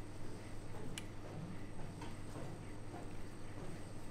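A deck of playing cards handled in the hands during a card trick: faint ticks and one sharper click of the cards about a second in, over a steady low room hum.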